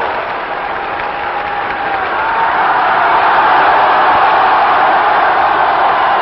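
A very large crowd cheering and applauding: a dense, steady din of clapping and many voices, with scattered shouts, growing a little louder after the first couple of seconds.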